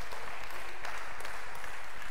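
A congregation applauding: steady, even clapping.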